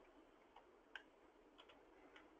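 Near silence with a few very faint, short ticks scattered through it, about four in two seconds.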